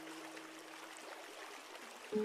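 Steady hiss of rushing waterfall water. The last held note of soft music fades out over the first second and a half.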